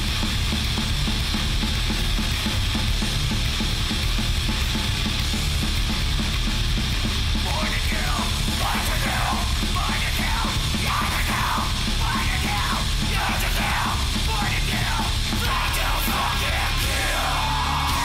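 Hardcore crust punk recording: loud distorted guitars, bass and drums playing without a break, with shouted vocals coming in about halfway through.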